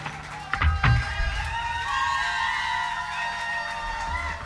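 Live rock band ending a song: a few drum hits about half a second in, then guitar and keyboard notes held and left ringing.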